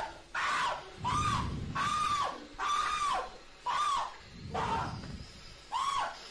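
A young man screaming in fright again and again, about seven long yells in a row, as an indoor firework fountain goes off right beside him.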